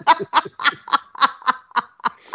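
A person laughing in a fast, steady run of short breathy pulses, about four a second.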